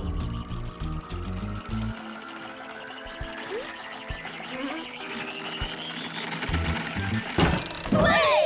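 Cartoon sound effect of a jack-in-the-box crank being turned: a rapid, even run of ratcheting clicks under a slowly rising tone, with music. Near the end a sudden loud pop as the box springs open.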